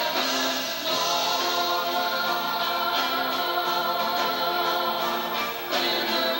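Choir singing a gospel worship song in long, held notes, accompanied by grand piano and electric guitar. New phrases begin about a second in and again near the end.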